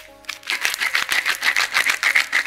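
Pepper mill grinding pepper: a quick, even run of gritty clicks, about ten a second, starting about half a second in.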